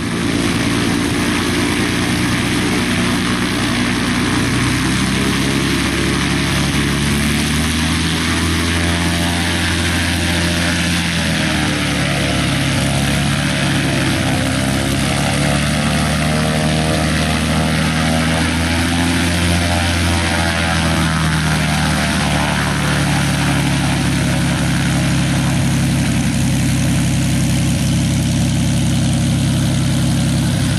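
Embraer EMB-720D Minuano (Piper PA-32 Cherokee Six) taxiing on grass, heard from outside: a steady drone of its six-cylinder piston engine and propeller. The pitch wavers up and down through the middle as the aircraft moves past.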